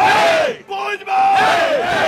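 A group of voices repeating a shouted call, each a held note that falls away in pitch, about once a second.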